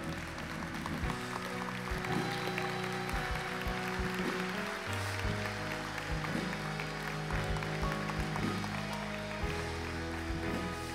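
Live church band playing slow, sustained chords on keyboard and guitar, with a congregation applauding underneath from about a second in.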